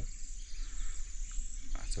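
Steady high-pitched chirring of insects, with a low rumble underneath.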